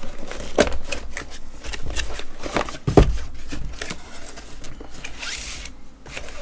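A cardboard product box being opened by hand: flaps and card handled with rustling and clicking, a single thump about three seconds in, and a brief hissing rustle of packaging near the end.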